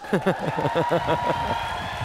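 Studio audience laughing, many voices overlapping, the laughter thinning out after about a second over a steady hiss and a held high tone.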